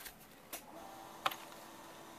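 Two light clicks of a clear hard-plastic accessory pack being handled, a faint one about half a second in and a sharper one just past a second, over a faint steady hum.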